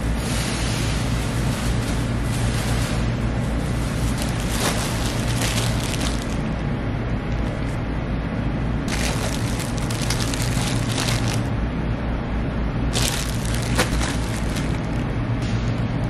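Clear plastic garment bags crinkling in several bursts a couple of seconds long, over a steady low hum.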